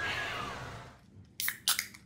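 Shop background noise that fades out over the first second, then, about a second and a half in, a quick run of sharp metallic clicks as fingers work the ring-pull tabs of aluminium seltzer cans to open them.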